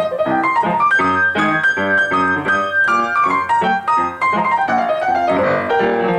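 Solo jazz piano in stride style on an upright piano: the left hand alternates low bass notes and chords in a steady beat under the melody.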